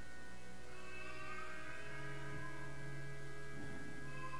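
Soft background music of long held chord tones over a steady low hum, with the chord changing to a new low note about two seconds in.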